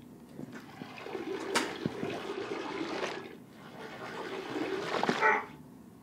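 A stream of urine splashing into toilet bowl water, swelling and easing, then falling away near the end.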